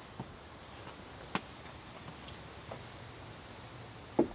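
A few light footsteps on stone and wooden deck boards, as a child steps up onto a plank deck, with one sharper knock about a second and a half in.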